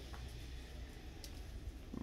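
Quiet room tone in a large store: a steady low hum with a couple of faint clicks.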